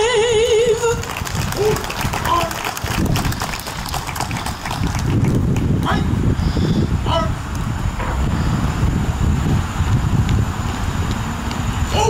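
A woman's held sung note with wide vibrato, the end of the national anthem, stops about a second in, followed by a few seconds of scattered clapping. After that come crowd voices over a low rumble.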